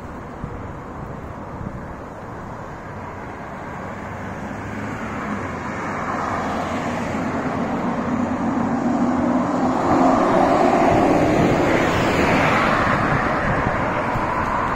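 Engine noise of a passing vehicle, building slowly over about ten seconds to its loudest near the end, then easing a little.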